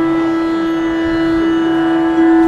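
A single drone note held steady with rich overtones: the tonic pitch sounding as the Carnatic ensemble settles to its key, with faint lower notes coming and going beneath it.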